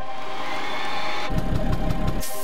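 Background music with steady held tones; about a second and a half in, a low, rapidly pulsing motor scooter engine comes in under it.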